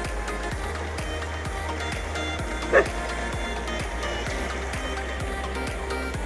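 Electronic dance music with a steady beat, and a single short dog bark over it about halfway through.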